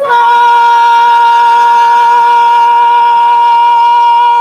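Women's vocal trio singing the last note of a gospel song, one long note held steady and loud.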